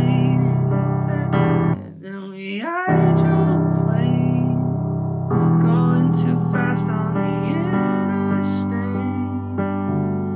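Piano chords played on a keyboard, each held for a couple of seconds and changing about 3, 5 and 8 seconds in, with a man singing a wordless melody over them. The chords break off briefly just before the 3-second change while the voice slides up.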